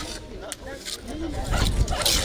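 People talking in the background. A steel trowel scrapes across wet cement on a concrete slab, louder near the end.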